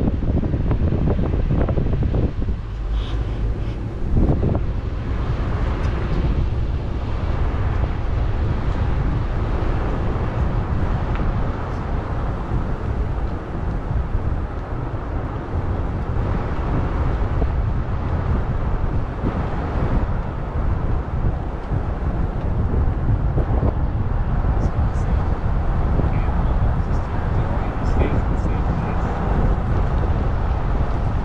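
Wind blowing across the microphone: a steady, low rumbling rush that swells and eases a little.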